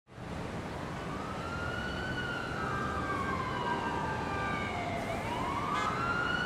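Emergency vehicle siren in a slow wail, rising, falling over several seconds and rising again, over a steady hum of city traffic.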